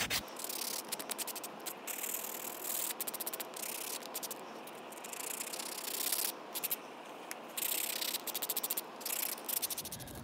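Nail sanding block buffing dip-powder fingernails with quick, short back-and-forth strokes in clusters with brief pauses, smoothing the rough surface left by filing.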